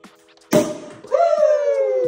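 Prosecco cork popping out of the bottle about half a second in, followed by a person's voice calling out in one long 'woo' that slides slowly down in pitch.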